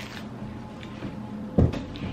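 A single dull thump about one and a half seconds in, over a faint steady background hum.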